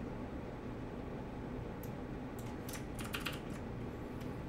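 Computer keyboard keys pressed in a quick run of clicks in the second half, a key chord struck three times over, over a steady low background hum.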